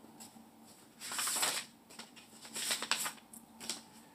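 Paper pages of a picture book rustling as they are turned by hand, in several short bursts; the longest and loudest comes about a second in.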